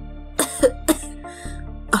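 A woman coughing a few times in short bursts, the cough of a sick, bedridden mother, over soft background music.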